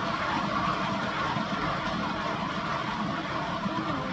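Steady whirring of a small electric motor, running evenly as the poured canvas spins on its turntable.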